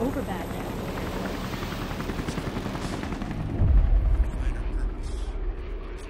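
A dense, noisy sound-effects bed under an archival montage, with a deep boom about three and a half seconds in that is the loudest moment, then fading away.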